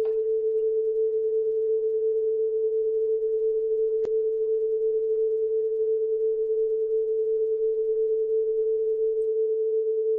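A steady, unbroken pure tone at a middle pitch: the test-pattern tone of a TV station's sign-off, held at an even level. A faint single click comes about four seconds in.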